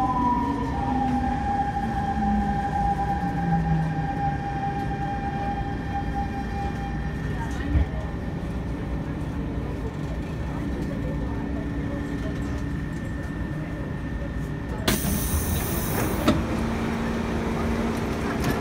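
C651 electric train's traction motor whine falling in pitch as it brakes into the station, holding a steady tone until it stops. A loud burst of hiss comes about three seconds before the end, as the doors open.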